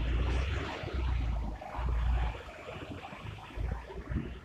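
Street ambience: traffic noise, with a low rumble that comes and goes in several pulses, strongest in the first two seconds.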